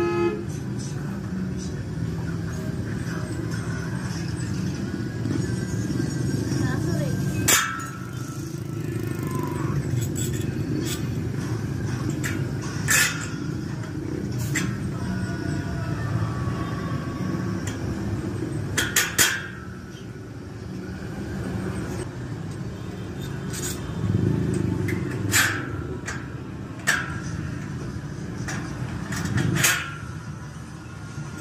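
Sharp metal clicks and taps, a few seconds apart, from a small bent steel bracket being handled and fitted against a stainless-steel frame, over a steady low background noise.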